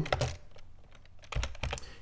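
Computer keyboard keystrokes: a couple of key clicks at the start, a pause, then a short run of several keystrokes in the second half.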